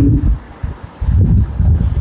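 Low rumbling noise on a clip-on microphone, like air buffeting it, faint at first and louder from about a second in.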